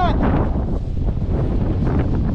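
Wind buffeting the camera's microphone: a steady, loud, unpitched rumble with uneven flutter.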